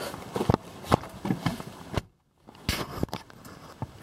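Scattered light clicks and knocks inside a car's cabin, with a moment of silence about halfway. There is no engine cranking or running: the 2012 Chevrolet Impala is not starting, even with a jump box attached.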